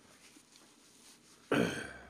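A man clears his throat once, a short harsh sound about one and a half seconds in that fades quickly.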